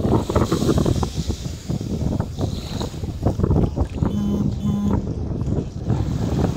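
Wind buffeting the microphone in a dense, gusty rumble over small waves lapping at the shoreline. About four seconds in, two short pitched beeps sound close together.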